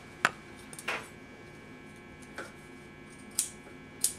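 Scissors snipping upholstery fabric where it is cut back around a chair leg: four short, sharp snips spread over a few seconds.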